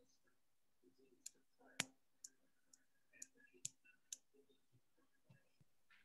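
Near silence with a row of faint, sharp clicks, about two a second, from about one second in to about four seconds in; the second click is the loudest.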